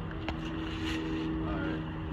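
A steady low mechanical hum holding one pitch, with a single light click about a quarter second in.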